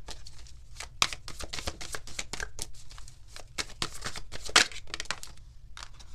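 Tarot cards being shuffled by hand: a rapid, irregular run of card flicks and snaps, the sharpest about a second in and again past four and a half seconds, thinning out near the end.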